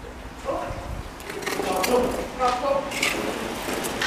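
Voices talking indistinctly, with a few sharp clicks among them.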